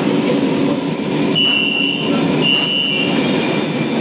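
Metro train carriage heard from inside, with a loud steady rumble of the running train. Over it, a short high beep repeats about once a second, alongside a lower tone that sounds on and off.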